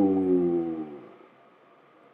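A man's long, drawn-out "ohhh" of amazement, sliding slightly down in pitch and trailing off about a second in.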